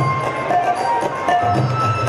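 Baul folk music played without singing: a plucked long-necked lute repeating a short low figure, with light hand percussion keeping the beat.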